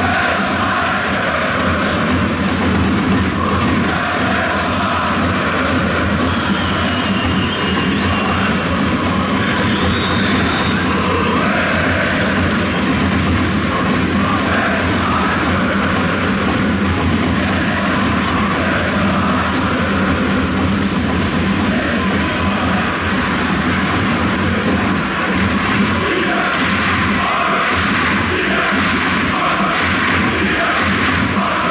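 A large crowd of football supporters singing a chant together, loud and unbroken.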